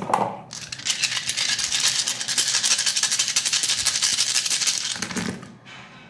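A handful of small plastic picture dice (story cubes) shaken in cupped hands: a fast, continuous clicking rattle lasting about four seconds. Near the end the dice are cast onto the tarot cards on the table.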